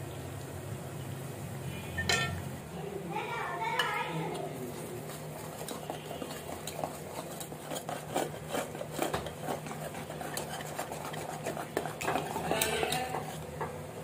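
A wire whisk beating thick batter in an aluminium bowl. The wires click rapidly and unevenly against the metal side, densest through the second half.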